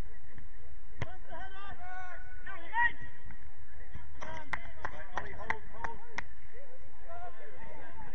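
Small-sided football match sound: players' distant calls and shouts. A single sharp knock comes about a second in, and a quick run of sharp clicks and knocks follows from about four to six seconds in.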